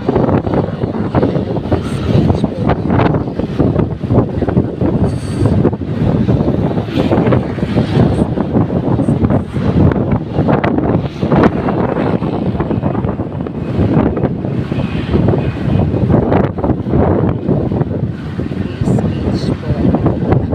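Loud wind buffeting on the microphone over the rumble of a moving vehicle, rising and falling in gusts.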